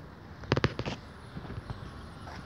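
A quick run of sharp clicks and knocks about half a second in, then a few fainter ones.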